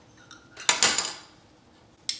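A metal spoon clinking against small glass dishes: a quick cluster of clinks a little under a second in, which then fade.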